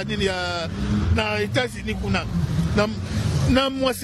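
A man speaking in short, loud phrases over a steady low background rumble.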